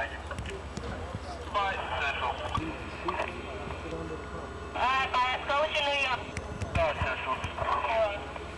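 Indistinct voices of several people talking in the street, heard in a few short stretches over a steady low hum.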